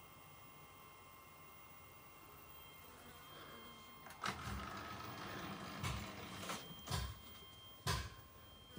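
Faint steady hiss for the first few seconds, then a run of soft bumps and rustles, about five in four seconds, from the camera being handled and moved about close to plastic carrier bags.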